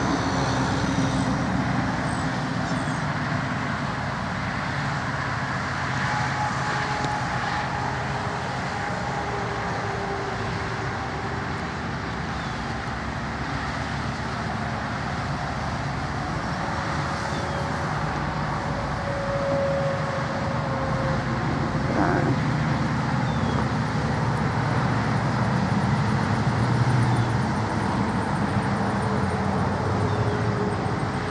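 Steady road noise from motor vehicles, swelling slightly in the second half.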